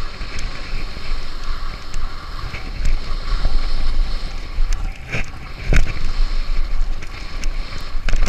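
Wind rushing over a bike-mounted or helmet camera microphone as a mountain bike rolls fast down a dirt trail, with tyre noise and sharp rattles and knocks from the bike. The loudest knocks come a little past five seconds in.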